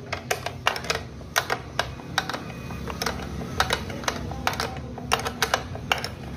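Steel spanner clicking and clinking on the nuts of a motorcycle speedometer's mounting bolts as they are tightened: a string of irregular sharp metal clicks, roughly two a second.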